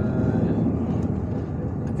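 Intercity bus driving, heard from inside the passenger cabin: a steady, low engine and road noise.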